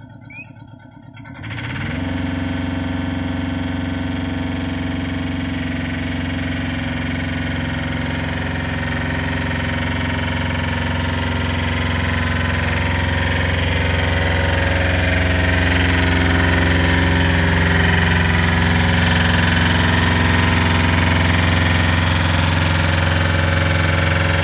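Diesel engine of a rough-terrain scissor lift revving up from a low idle about a second and a half in, then running steadily at raised speed as the lift drives across gravel, growing a little louder in the second half.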